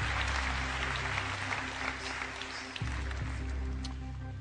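Studio audience applause fading out over a low, steady music bed.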